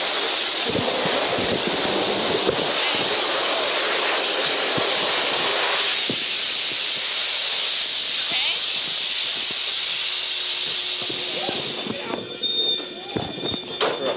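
Halon fire-suppression system discharging: a loud, steady rushing hiss of released gas that covers everything else and dies away about twelve seconds in. After that the fire alarm's steady tones can be heard again.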